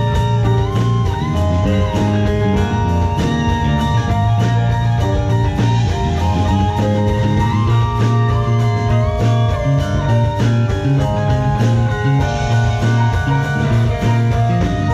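Guitar-led rock or blues music with bass and a steady drum beat; the lead guitar holds and bends its notes.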